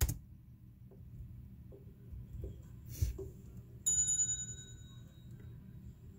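A sharp click, a softer knock about three seconds later, then a bright high chime about four seconds in that rings and fades over a second.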